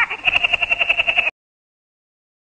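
Woody Woodpecker's cartoon laugh: a rapid staccato run of high, pitched notes that cuts off suddenly about a second in.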